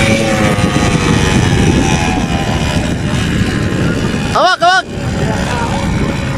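Quad ATV engines running at idle, a steady rough rumble, with a brief high sound that rises and falls about four and a half seconds in.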